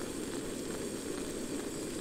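A portable camping gas stove burner running with a steady hiss under a pot of simmering food.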